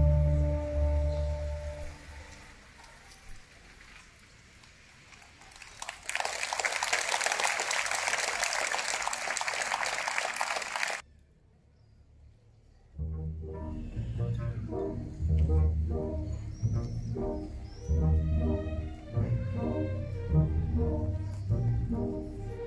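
A symphony orchestra's sustained low chord that fades away, then about five seconds of applause that cuts off abruptly. After two seconds of near silence the orchestra starts a new passage of rhythmic bowed notes from the double basses and low strings.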